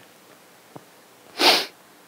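A man's single short, sharp burst of breath through the nose or mouth, about one and a half seconds in, close to a headset microphone.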